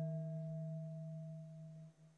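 A single struck, bell-like chime tone rings out and slowly fades: a low tone with a few higher overtones over it. Near the end it drops away sharply to a faint lingering tail.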